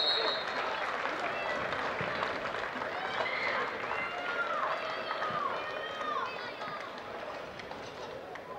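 Football players shouting and calling to each other on the pitch, over open-air stadium ambience. A short high whistle blast sounds right at the start, then several drawn-out shouts rise and fall a few seconds in.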